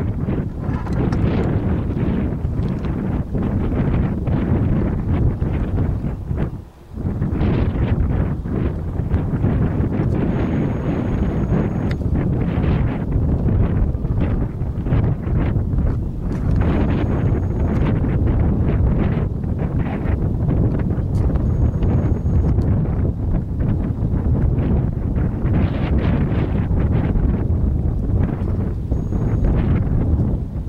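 Wind buffeting the microphone: a loud, steady low rumble of gusts, with a brief lull about seven seconds in.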